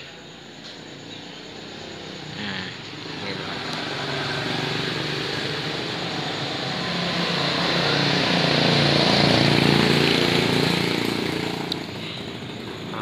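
A motor vehicle passing on a nearby road: engine and tyre noise grow louder over several seconds, peak about three-quarters of the way through with the engine note bending in pitch as it goes by, then fade.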